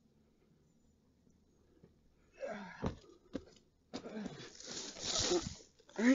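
Near silence, then from about two seconds in a person's breathy, wordless vocal sounds, broken by a couple of sharp clicks.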